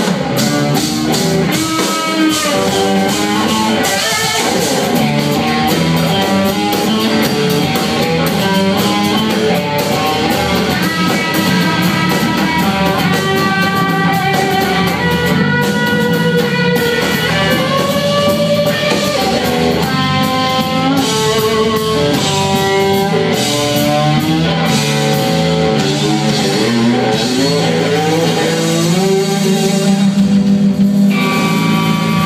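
Live rock trio playing: an electric guitar plays a lead line of long held, bending notes over electric bass and a drum kit.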